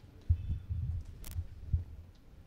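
Handling noise from a handheld wired microphone as it is passed from one person to another: a string of low thumps and rumbles, with a sharper click about a second and a quarter in.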